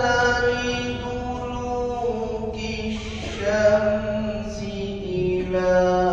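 A male qari reciting the Quran in a melodic tajweed style, holding long drawn-out notes that shift slowly in pitch.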